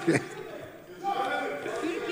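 Speech in a large hall: a single word with a laugh at the start, then a brief lull and low voices.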